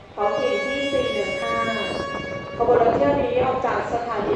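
Hitachi RHN diesel railcar's horn sounding one long steady blast of about two and a half seconds. Voices follow from about halfway in.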